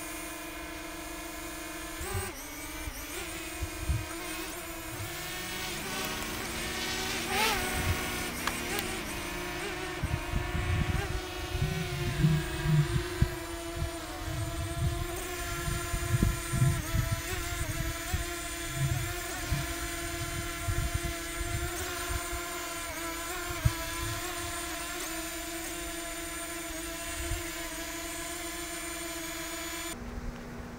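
Small camera quadcopter drone's motors and propellers whining steadily as it hovers and comes down to land, with one pitch swell rising and falling a few seconds in. Scattered low thumps come in the middle.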